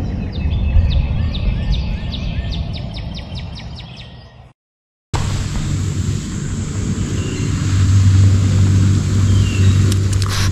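A bird singing a repeated, quickly falling chirp, about three a second, fading out about four seconds in. After a brief dead silence, a steady outdoor background with a low hum takes over.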